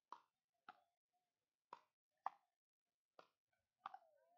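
Pickleball rally: six sharp pops of paddles hitting the hard plastic ball, coming about every half second to a second, the loudest a little past two seconds in.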